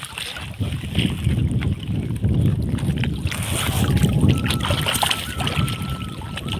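Water dripping and splashing off a wet fishing net as it is pulled in by hand, with scattered small spatters over a low steady rumble.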